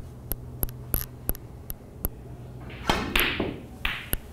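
Sharp clicks from a snooker cue, rest and balls during a shot played with the cross rest: a run of light irregular taps over the first two seconds, then a short hissy rush and a few more clicks near the end.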